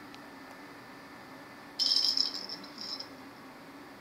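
A kitten batting a cat toy ball, which gives a high-pitched rattle for about a second starting near two seconds in.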